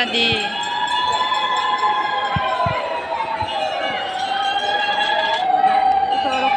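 Several conch shells blown in long, overlapping notes that drift slowly in pitch, over the chatter of a dense crowd of worshippers.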